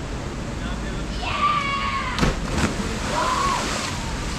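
A person jumping into a river pool: a sharp splash about two seconds in, with people's voices calling out around it over the steady rush of river water.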